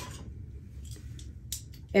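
Faint rustling and a few light clicks of hands handling wig hair and picking up a spray can, over a low steady room noise.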